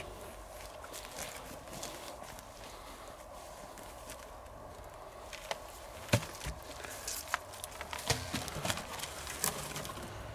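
Quiet footsteps and rustling on dry grass, then from about halfway a string of irregular knocks and scrapes as a rusty door panel covering a stone-walled underground opening is pulled aside and laid down.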